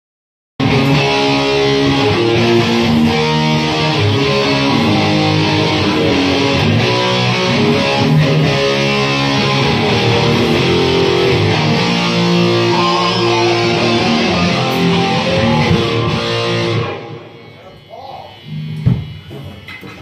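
Rock music with electric guitar playing held chords, loud and dense. About three-quarters of the way through it cuts off suddenly, leaving only faint room noise and a few knocks.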